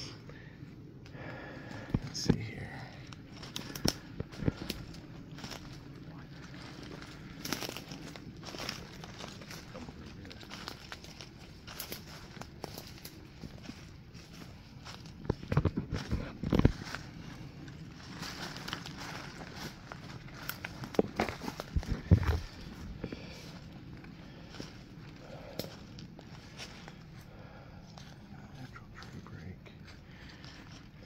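Footsteps crunching through dry leaf litter and brush, with leaves crackling and twigs snapping in irregular clusters, busiest about halfway through and again a few seconds later.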